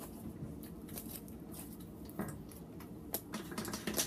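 Quiet room hum with scattered small clicks and taps of objects being handled on a table, a few more of them near the end.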